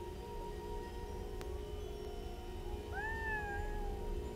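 Marching band holding a soft, sustained chord. About three seconds in, a single higher tone slides up and then holds for about a second over it.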